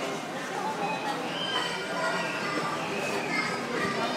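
Busy amusement-arcade din: a mix of children's and adults' voices with electronic music playing.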